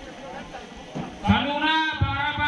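A person's loud, drawn-out call starting about a second in and carrying on, wavering in pitch, past the end, over background crowd chatter.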